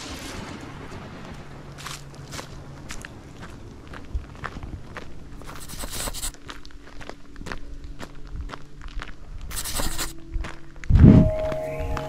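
Footsteps on a gravel path strewn with dry fallen leaves, with soft background music of held tones coming in over the second half. A heavy thump about eleven seconds in is the loudest sound.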